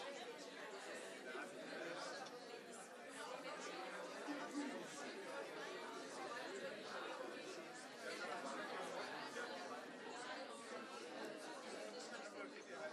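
Indistinct chatter of many people talking at once in a large meeting hall, steady throughout with no single voice standing out.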